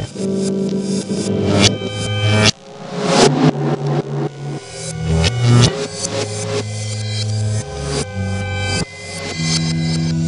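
Live jam-session music: held bass notes shifting pitch every second or so, with electronic and guitar tones and frequent sharp percussive hits.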